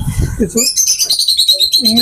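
Budgerigars chattering in a cage: dense high chirps and trills, with a fast run of short repeated notes in the second second.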